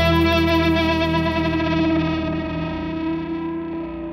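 Rock song's closing chord: distorted electric guitars held and ringing out through effects, with a slow pulsing in the low notes. The sound fades steadily.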